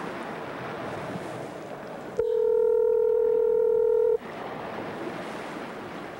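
Telephone ringback tone over an open phone line: line hiss, then one steady ring lasting about two seconds, starting about two seconds in, as an outgoing call rings at the other end.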